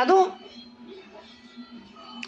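A man says one short word at the start, then a quiet lull with only a faint steady low hum behind it.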